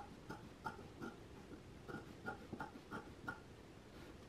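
Scissors snipping through the edge of a sewn fabric seam allowance, a run of about a dozen faint, quick snips at uneven spacing, as one layer of the seam allowance is trimmed shorter than the other to layer the seam.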